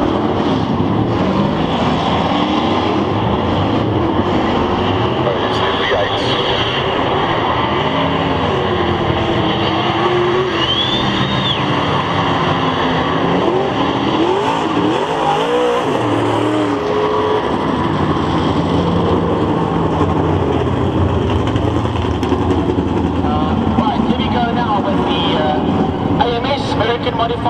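V8 dirt-track race cars running slowly round the oval as a group, their engines rising and falling in pitch as the throttles are blipped, most busily around the middle.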